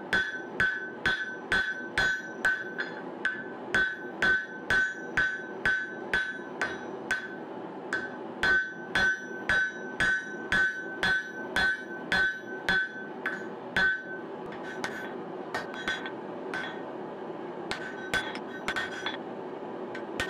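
Hand hammer striking a red-hot steel axe head on an anvil, about two to three blows a second, each with a bright ring from the anvil, as the blade's bit is forged to shape. After about fourteen seconds the blows come less often and lighter.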